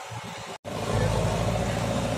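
JCB backhoe loader's diesel engine running steadily. It sets in abruptly after a brief dropout about half a second in.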